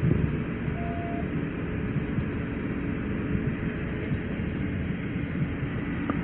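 Steady low rumble of idling vehicles close by, picked up by a body-worn camera's microphone. A brief faint tone sounds about a second in.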